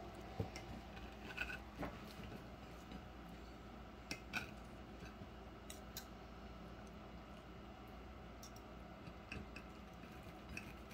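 Faint, scattered clicks and scrapes of a metal fork and knife against a ceramic plate while cutting slow-cooked meat.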